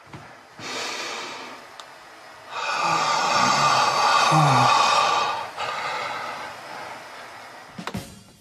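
A man breathing heavily in two long breaths, the first about half a second in and the second longer and louder with a low groan in it, then fading.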